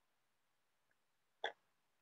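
Near silence with a single short click or tap about a second and a half in.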